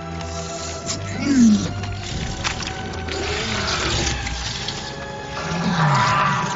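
A large film monster roaring and growling, with two falling low cries, about a second in and near the end, over a low rumble and dramatic score music.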